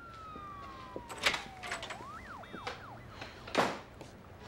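A door hinge creaking in long, thin squeaks: one slow falling squeak, then several irregular rising and falling ones. There is a short knock about a second in, and a louder thud near the end as the door shuts.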